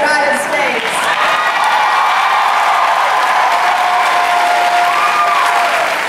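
Audience applauding and cheering: a steady wash of clapping with long held shouts from the crowd over it, one rising and falling near the end.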